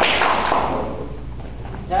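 A single sharp thump, ringing out and dying away in the large hall over about a second and a half.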